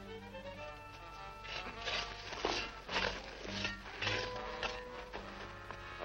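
Dramatic film-score music: held chords at first, then a run of loud accented hits from about a second and a half in.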